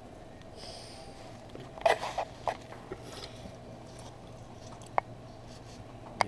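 Light clatter from a knife, plastic peanut butter jar and paper plate being handled while a sandwich is made: a cluster of knocks about two seconds in, a few softer ones after, and one sharp click near the end, over a steady low hum.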